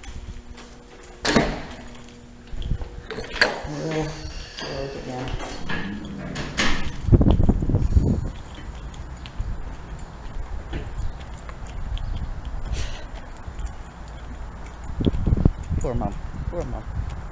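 Footsteps and knocks of someone walking with a handheld camera, with a door sound as they pass through glass doors, and low rumbles of wind buffeting the microphone about seven seconds in and again near the end. Voices murmur in the background.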